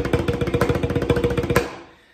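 Banda snare drum (tarola) played with wooden sticks: a fast, even run of strokes with the drum's ring sustained underneath, ending on a louder accented stroke about one and a half seconds in that then rings out.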